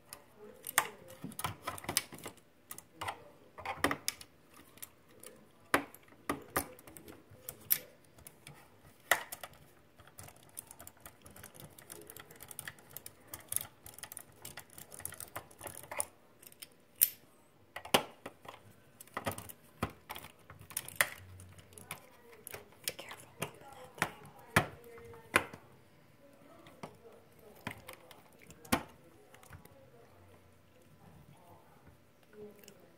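Hand screwdriver taking screws out of an incubator's plastic base: irregular sharp clicks and taps as the bit seats, turns and knocks against the plastic.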